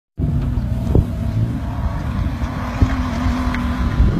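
Off-road 4x4's engine running under a heavy low rumble, with a steady engine tone in the second half and two sharp knocks, about one second and about three seconds in.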